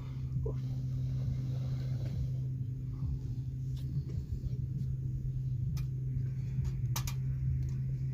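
A steady low hum over rumbling wind noise on the microphone, with two short sharp clicks a second apart near the end.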